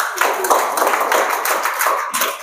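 Audience applause: many people clapping together in a dense, steady patter.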